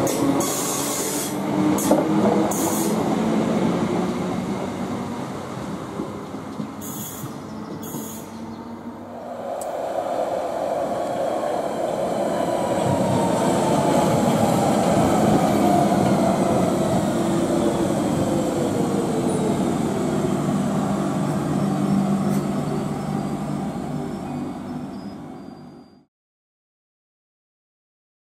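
An electric multiple-unit train running past on the rails, then a London Underground Central line 1992-stock train passing with rail noise and a motor whine that falls slowly in pitch. The sound fades out at the end.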